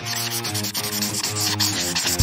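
Paint-marker tip rubbing and scratching rapidly over a smooth, hard rounded surface as it colours in, over background music.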